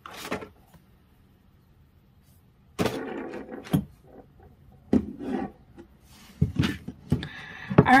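Handling noises: a short burst at the start, then, from about three seconds in, a series of knocks and scrapes, as of small objects and packaging being picked up and set down on a wooden table.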